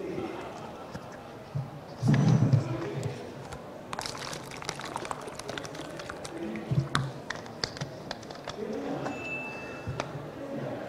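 Plastic water bottle being handled and opened, a run of sharp clicks and crackles over several seconds, with a loud cough about two seconds in.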